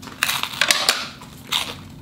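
A bite into a slice of crisp-crusted Hearth & Fire Bianca white pizza, the crust crunching several times in the first second as it is bitten and chewed.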